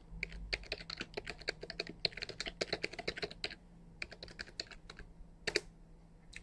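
Computer keyboard typing: a fast run of keystrokes for about three and a half seconds as a long password goes in, then a few slower key presses and one louder keystroke near the end.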